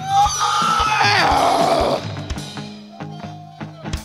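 A live punk band playing loudly on stage, with electric guitar, sustained low notes and regular drum hits. A loud yell rides over the top for the first couple of seconds.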